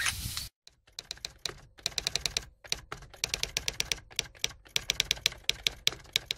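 Typewriter keystroke sound effect: quick runs of sharp clacking keystrokes with short pauses between them, accompanying a caption being typed out on screen.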